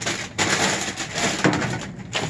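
Irregular rustling and crinkling of plastic trash bags and cardboard shifted by hand while rummaging through dumpster trash.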